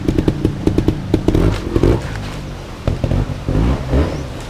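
Trials motorcycle engine blipped in quick, sharp throttle bursts as the bike climbs over rocks, then revved harder in a few louder bursts as it rides on.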